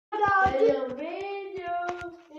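A child's voice singing in long, gliding notes, with several short knocks mixed in.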